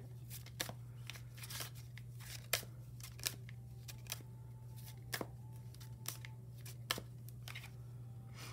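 A tarot deck being shuffled by hand: cards slapping and sliding together in short, irregular clicks, over a steady low hum.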